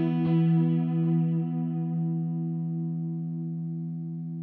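Electric guitar chord from a Fender Telecaster, played through the Source Audio Collider pedal's tape delay, ringing out and slowly fading after the last strum, with a faint repeat just after it begins.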